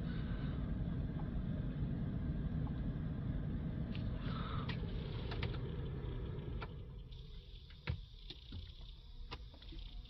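Steady low rumble from the Range Rover Sport with its ignition on. It dies away about seven seconds in as the ignition is switched off at the start/stop button, then a few light clicks and taps follow.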